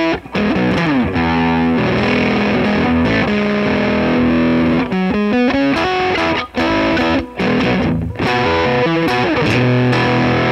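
Stratocaster-style electric guitar played through a Jordan Bosstone fuzz clone into a Dumble-style tube amp, giving a thick distorted fuzz tone. A run of single-note phrases with pitch bends and slides, broken by a few short gaps between phrases.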